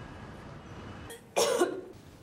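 A person retching once over a toilet bowl, a loud, harsh heave lasting about half a second, a little past the middle.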